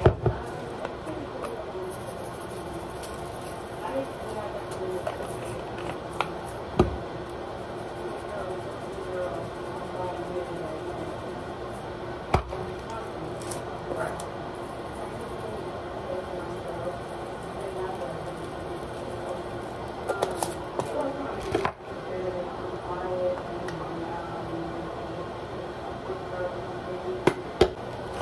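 Faint, steady background voices and music with no clear words, and a few sharp knocks of containers on the countertop while seasoning is shaken over potatoes in a plastic colander.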